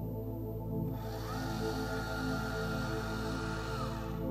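A motorised telescope mount slewing to a new target: starting about a second in, a whirring whine rises in pitch, holds steady and then drops away near the end. Soft ambient background music plays under it.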